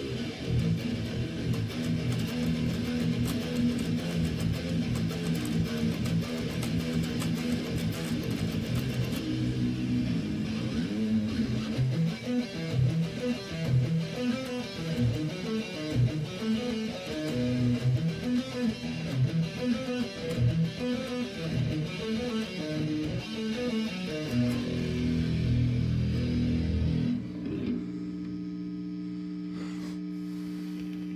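Electric guitar playing a heavy metal riff: ringing chords at first, then a faster, choppier passage. It stops sharply near the end, leaving a steady electrical hum.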